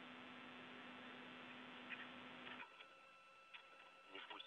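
Near silence: a faint steady hum and hiss that drops away about two and a half seconds in, with a few faint ticks.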